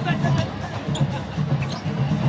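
A basketball dribbled on a hardwood court, a few bounces about half a second apart, over arena crowd noise and music from the arena speakers.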